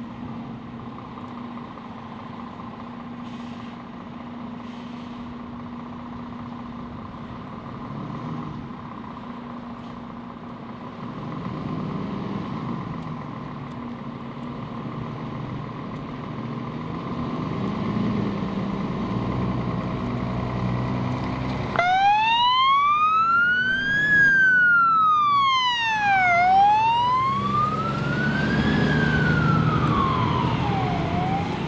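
A Scania fire engine's diesel engine runs as the truck pulls out, swelling a few times as it revs. About two-thirds of the way through, its siren starts: a slow wail that climbs and falls in long sweeps, signalling an emergency response.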